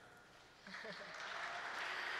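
Audience applause, starting about half a second in and growing steadily louder.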